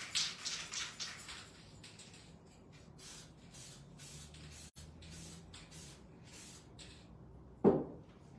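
Aerosol can of spray varnish hissing in several short bursts in the first second or so, then fainter bursts a few seconds later. A single loud thump comes near the end.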